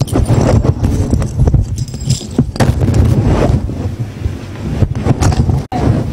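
A steady low rumble, like wind buffeting the microphone, with scattered rustling and handling noises.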